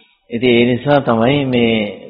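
A Buddhist monk's voice intoning a phrase in a slow, drawn-out, chant-like way. It starts after a brief silence.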